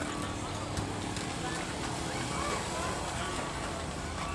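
Faint, indistinct voices over a steady outdoor background hum.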